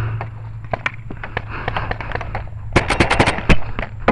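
Paintball markers firing: scattered single shots, then a rapid burst of about eight shots about three seconds in, followed by one more loud shot.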